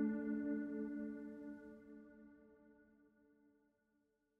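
A held solo piano chord dying away slowly and fading to silence about three and a half seconds in.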